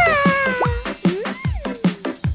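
Cartoon soundtrack: bouncy background music with a steady beat, over a long, falling, voice-like cartoon sound and a few short rising pitch slides.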